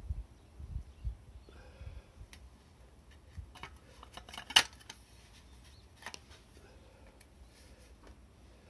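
Handling noise of a plastic caulk cartridge turned in the hand close to the microphone: light rubbing and scattered clicks, with low thumps at the start and one sharp click about halfway through.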